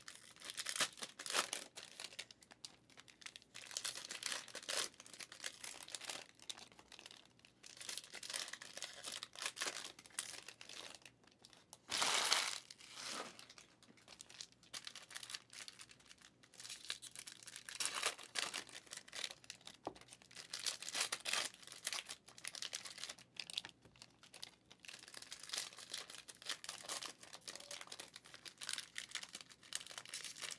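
Trading cards rustling and sliding against one another as a stack is flipped through by hand, in quick crisp flurries, with one louder crinkling burst about twelve seconds in.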